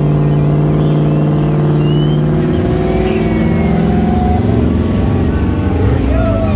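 A big Class A motorhome's engine under hard acceleration as it launches down a drag strip. The note holds steady for about two and a half seconds, then drops and roughens as it pulls away.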